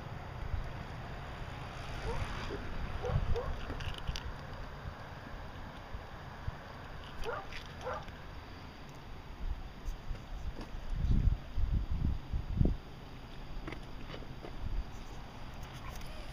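Wind buffeting the microphone with a steady low rumble. A few short rising animal calls come about two to three seconds in and again around seven to eight seconds. Heavier wind thumps come around eleven to twelve seconds.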